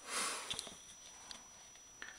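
A brief sniff close to the microphone, followed by a few faint light clicks as a canvas print is handled.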